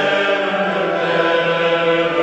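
A choir singing long, held notes in several parts, in a slow chant-like style.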